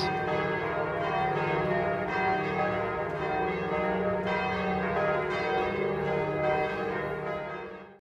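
Bells ringing, many overlapping tones with a new strike about every second, fading away at the very end.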